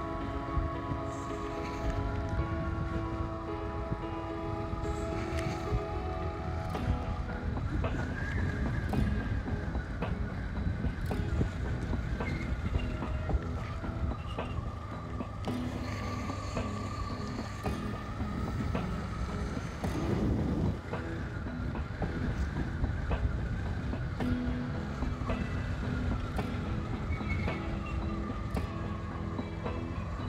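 Motorcycle engine running on a winding downhill ride, its note rising and falling gently through the curves, with wind rushing over the microphone.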